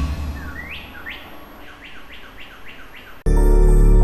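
A row of bird chirps, each a quick rising call, sparse at first and then coming about three a second, over a low rumble. About three seconds in, loud calm music cuts in abruptly.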